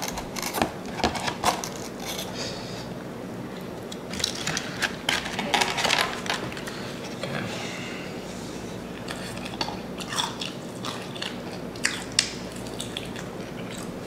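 A person biting into and chewing a crunchy breaded, deep-fried chicken wing (McDonald's Mighty Wing), with crisp crunches in bunches, the thickest run about four to six seconds in, then scattered chewing noises.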